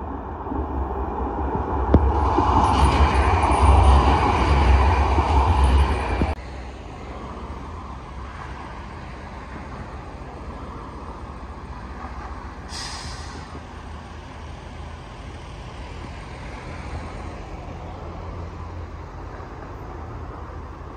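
Sheffield Supertram passing close on street track, loud with wheel-on-rail rolling noise and deep rumble for about four seconds, then cut off abruptly. A steadier, quieter background of road traffic follows, with a short hiss around the middle.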